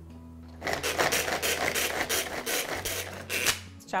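Hand-powered pull-cord food chopper whirring through fresh strawberries in a run of quick pulls, its blades spinning and clattering in the plastic bowl. The chopping starts about half a second in and stops just before the end.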